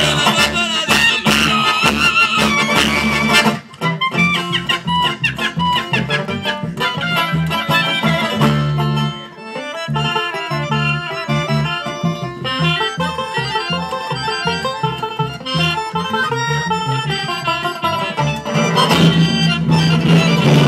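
Live acoustic band playing: accordion, clarinet, upright double bass and guitar. A loud, full passage breaks off suddenly about three and a half seconds in, a thinner, quieter stretch with a melody line follows, and the full band comes back in near the end.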